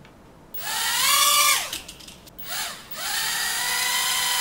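Small toy quadcopter's motors and propellers whining as they spin up. A rising whine holds for about a second and falls away, then comes a short blip, then a longer steady whine from about three seconds in.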